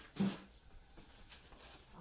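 A short thump about a quarter second in, then faint rustling of packaging being handled.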